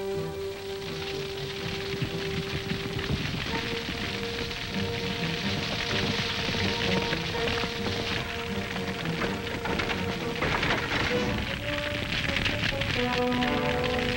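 A dense crackling noise of a burning grass fire, swelling from about two seconds in, under a film score with long held notes.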